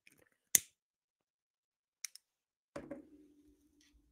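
Isolated clicks in a small room: one sharp click about half a second in, two faint quick clicks around two seconds, then a duller knock near three seconds followed by a short low hum that fades.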